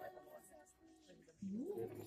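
Group hymn singing dies away into a brief lull. About one and a half seconds in, a voice slides up in pitch and holds a note as the singing starts again.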